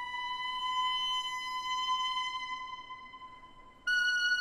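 Background music: a long held tone with many overtones that creeps slightly up in pitch and fades away over the second half, then a higher held tone starts suddenly just before the end.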